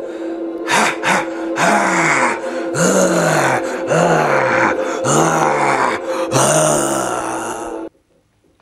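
A man's voice growling in a string of drawn-out cries, about one a second, each rising and then falling in pitch, over a steady held tone of background music; it cuts off abruptly just before the end.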